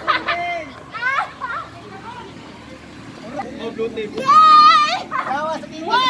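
Several high-pitched young voices calling and shouting over one another, with one long drawn-out call about four seconds in, the loudest.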